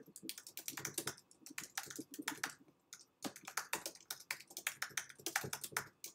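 Typing on a computer keyboard: a run of quick, irregular key clicks, with a brief pause about halfway through.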